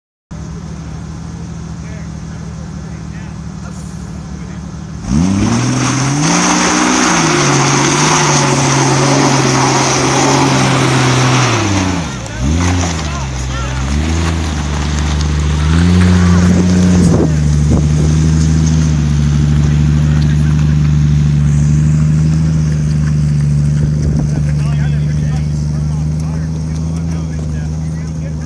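Jeep Cherokee XJ engine idling, then revved hard about five seconds in and held high under load as the Jeep climbs a steep rock slope. The revs dip and surge again twice, around twelve and sixteen seconds, then hold steady for the rest of the climb.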